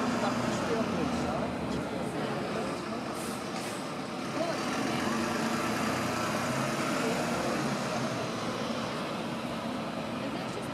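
Steady city street noise: a double-decker bus running close by amid traffic, with indistinct voices of passers-by.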